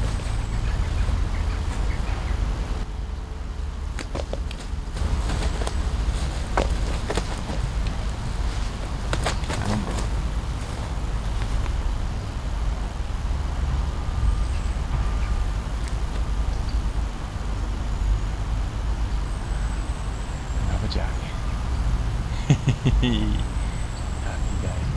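A steady low rumble, with scattered light clicks and rustles from a jack pike being handled in a mesh landing net by gloved hands. A sharper cluster of knocks comes near the end as the fish is lifted out.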